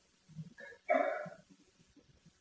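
A man's short vocal sound, about half a second long, about a second into a pause in his talk. The rest is quiet room tone.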